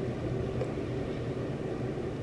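Steady background hiss with a low hum: room tone.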